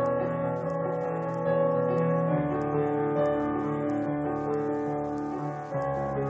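Solo piano playing slow, held chords, with the harmony changing a little past two seconds in and again near the end. It is recorded through a mobile phone's microphone.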